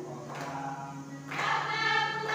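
A group of voices singing together as a choir, the singing swelling louder about a second and a half in, over a steady low tone.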